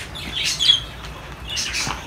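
Small cage birds in an aviary chirping, with a short burst of high chirps about half a second in and another near the end.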